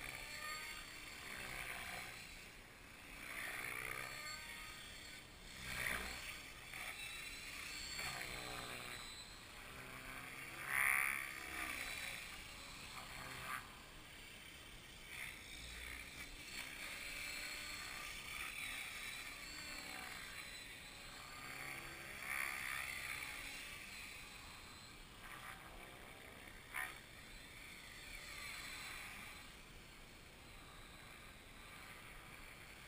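A helicopter flying over and around the camera. Its rotor and engine sound swells and fades several times as it passes, loudest about eleven seconds in.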